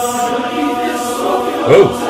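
Men's barbershop chorus singing a cappella, holding a close-harmony chord. Near the end a single man's voice rises briefly over it.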